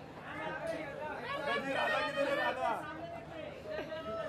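Chatter of several voices talking over one another, with no one voice standing out.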